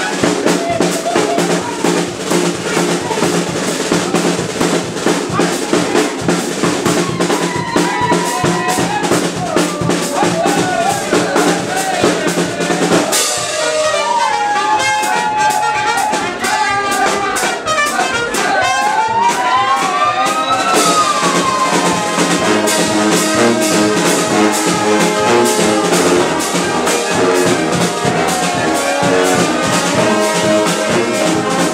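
Dweilorkest (Dutch brass street band) playing live: trumpets, trombones and sousaphones over bass drum and hand cymbals. About thirteen seconds in the low brass drops out and a lead line with pitch slides carries on over the drums, then the full band comes back in.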